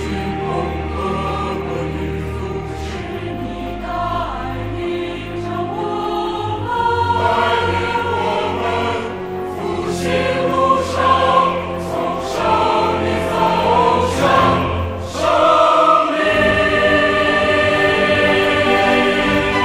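A large choir of men's and women's voices sings a patriotic Chinese song together with instrumental accompaniment. The singing grows fuller and louder in the second half.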